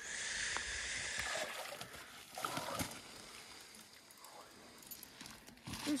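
Water pouring and splashing off a trapped beaver as it is hauled out of shallow water, a steady hiss lasting about a second and a half that stops abruptly. Quieter sloshing follows, with a short splash about two and a half seconds in.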